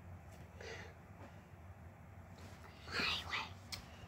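A child's breathy whispering, faint about half a second in and louder about three seconds in, over a low steady hum.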